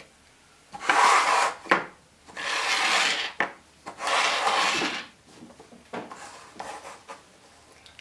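Plastic cups being slid across a hard tabletop as they are shuffled, scraping on the surface: three loud scrapes of about a second each, then softer, shorter scrapes in the last few seconds.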